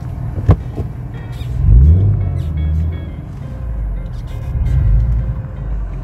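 BMW E36's stroked M52B30 3.0-litre straight-six engine pulling the car along, heard from inside the cabin: its pitch climbs about a second and a half in to the loudest point, holds, then climbs again about five seconds in. Background music plays underneath.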